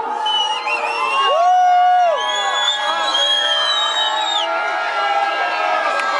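Club crowd cheering and whooping over minimal techno as the kick and bass drop out of the mix, leaving only the upper parts of the track.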